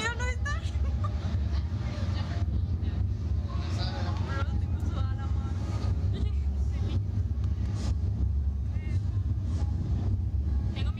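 A steady low rumble runs throughout, with short snatches of voices near the start, about four seconds in and near the end.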